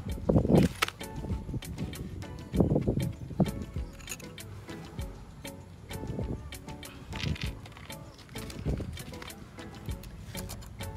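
Background music, with a run of small clicks and several louder knocks and rustles from skateboard parts and packaging being handled.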